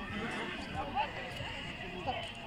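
A horse whinnying, with its loudest call about a second in, over the chatter of people nearby.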